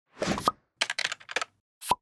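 Sound effects for an animated logo intro: a short swell that ends in a pop with a brief tone, then a quick run of clicking ticks, then a second short pop near the end.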